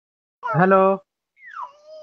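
A voice says "hello" on a played-back voice recording, followed by a quieter high tone that slides down and then holds steady.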